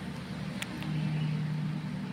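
Low, steady background hum that swells a little for about a second in the middle, with a faint click just over half a second in.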